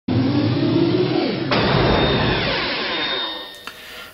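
Electronic intro sound effect: a droning pitched sound, then a sudden noisy whoosh about one and a half seconds in that fades away over the next two seconds.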